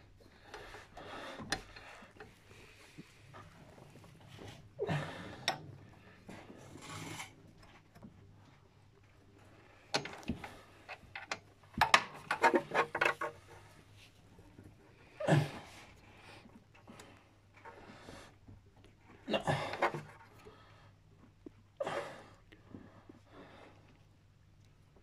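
Scattered handling noises as a wrench is worked on the accessory-belt tensioner pulley: rubbing and scraping, a quick run of sharp metallic clicks around the middle, and short breathy puffs of effort.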